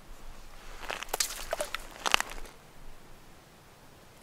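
Short clicks and rustles of hands handling ice-fishing tackle and clothing, in a cluster from about one to two and a half seconds in, loudest near two seconds.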